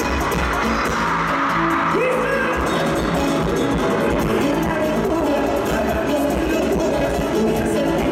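Live bachata music from a full band, with a male lead vocal singing over it, heard from the audience in a large concert venue.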